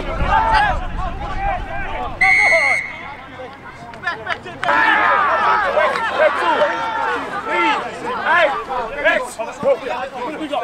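Rugby referee's whistle, one short, steady blast about two seconds in. Many overlapping voices call and shout on and around the field throughout.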